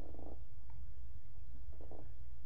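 Steady low hum of room tone, with two faint brief sounds near the start and near the end.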